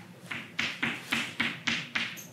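Chalk tapping and scraping on a blackboard as letters and symbols are written: about seven quick, sharp strokes, roughly three a second.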